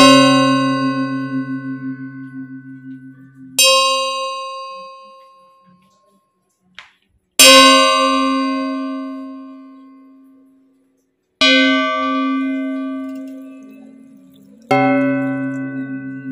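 A deep bell struck in single strokes about every four seconds, each stroke ringing on and fading slowly.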